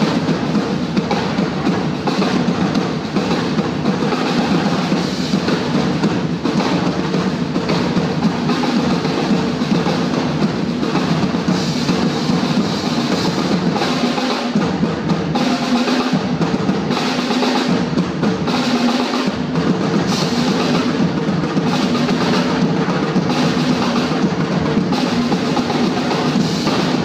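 A group of drummers playing snare and tom drums together in a dense, continuous rhythm without a break.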